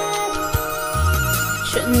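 Instrumental backing track of a Chinese pop ballad playing between sung lines: long held melody notes over soft sustained chords, with a deep bass note coming in about halfway. A woman's singing voice comes in right at the end.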